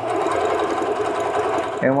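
Singer Patchwork sewing machine running at a steady speed, stitching a zigzag test seam through fabric to check the balance of upper and bobbin thread tension. The sewing stops just before two seconds in.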